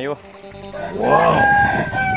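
A rooster crowing once: a single call of about a second and a half that rises in pitch and then holds.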